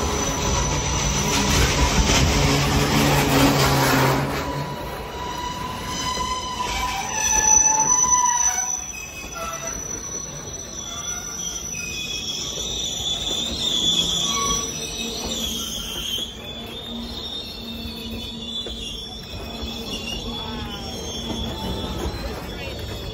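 Freight train cars rolling past close by, with steel wheels rumbling on the rails. The rumble is loudest in the first few seconds. After that, high-pitched wheel squeals hold as steady tones, fading in and out.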